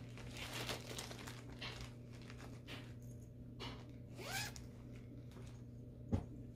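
A clear plastic project bag holding a cross-stitch kit being handled: plastic crinkling and a few short zip-like strokes, with a brief rising squeak a little past the middle.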